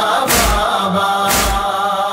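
Male chorus chanting a Shia noha refrain, with unison chest-beating (matam) landing about once a second as a heavy, regular thump.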